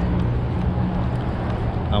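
A steady low drone over general outdoor background noise.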